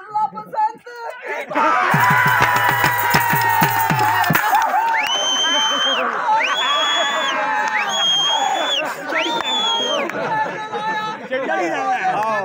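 Crowd noise over music from a Dogri folk programme: a drum beats quickly for a couple of seconds, then a high, whistle-like tone sounds four times, each held about a second, over the shouting crowd.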